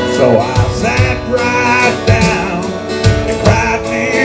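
Harmonica solo played through a microphone, with wavering, bending notes, over strummed acoustic guitar and a steady drum-machine beat.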